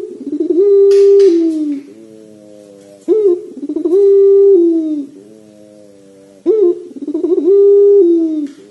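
Ringed turtle dove (puter pelung) giving long drawn-out coos, three in a row about three seconds apart. Each coo opens with a quick stuttering rise, holds one steady note, then falls away.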